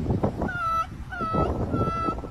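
Short, high-pitched animal calls repeated three times about half a second apart, each dipping slightly in pitch at the start, over rough background noise.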